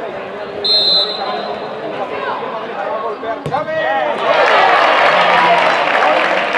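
A referee's whistle gives one short blast about a second in. About three and a half seconds in comes the single thud of a football being struck for a penalty kick. After it a crowd of spectators breaks into loud shouting and cheering.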